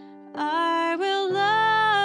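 A woman singing a worship song with held notes over sustained keyboard chords; her voice comes in about a third of a second in, and a new low chord enters about halfway through.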